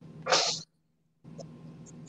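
A woman sneezing once, a single short, sharp burst near the start.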